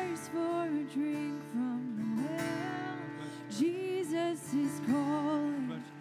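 A live worship band playing a song: a voice singing the melody over strummed acoustic guitars and held chords.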